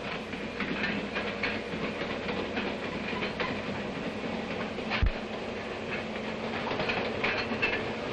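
Steady running noise of a moving railway mail car, its wheels clicking over the rail joints, with one sharp, deep knock about five seconds in.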